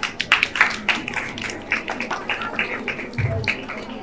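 A small group of people clapping their hands in a fairly even beat of about five claps a second, with a low thump about three seconds in.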